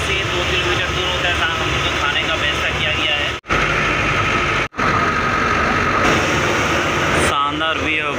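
Engine and road noise of a moving bus heard from inside the cabin, a steady low rumble, with passengers' voices chatting over it. The sound drops out twice for a moment around the middle.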